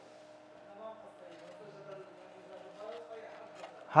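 Faint steady hum of a small desktop evaporative air cooler's fan running, with faint voices in the background.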